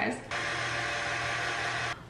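KitchenAid stand mixer motor running steadily as it drives the pasta roller attachment rolling out a sheet of pasta dough. It starts about a third of a second in and stops abruptly near the end.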